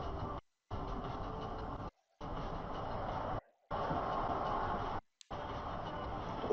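Car cabin road and engine noise picked up by a dash camera: a steady low rumble that cuts out to silence for a moment about every second and a half.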